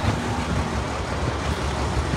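Steady low rumble of street traffic and nearby running vehicle engines.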